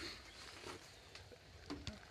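Faint rustling with a few soft ticks, otherwise quiet.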